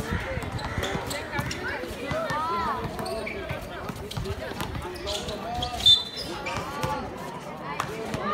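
A basketball bouncing on a hard outdoor court, with scattered knocks and voices from players and onlookers calling out. One sharp, loud knock stands out about six seconds in.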